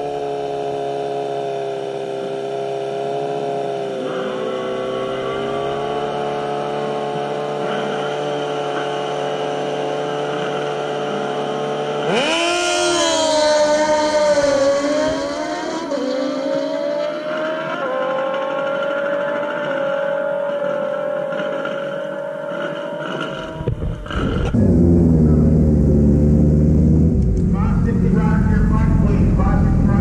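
A drag-racing sport bike's inline-four engine holds steady revs at the start line. About 12 seconds in it launches with a sharp rise in pitch, and three quick gear changes drop and lift the note as it pulls away down the strip. From about 24 seconds in comes a louder, deeper engine sound picked up on the bike itself.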